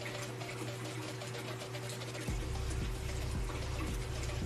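Kitchen faucet running a steady stream of water into a sink while a plastic shaker bottle is rinsed under it. Background music plays along, its bass line coming in a little past the halfway point.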